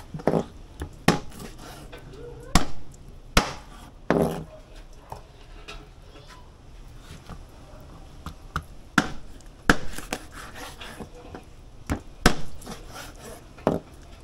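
Kitchen knife chopping chicken backs into bite-size pieces on a plastic cutting board: sharp, irregular chops, some in quick pairs, with pauses between.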